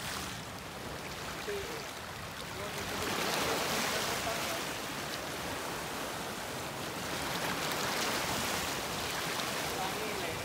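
Small sea waves washing over rocks and shallow water, swelling twice.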